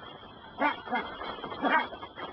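A dog barking: three short barks.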